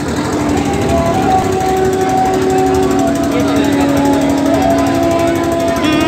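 Motorcycle engines running inside a wooden Well of Death drum: a loud, dense rattle with several steady engine tones that shift pitch in steps.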